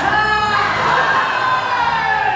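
A crowd of guests cheering and whooping together, the voices swelling suddenly and then sliding down in pitch.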